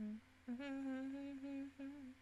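A woman humming with her mouth closed: one held note starting about half a second in, then a short second note near the end.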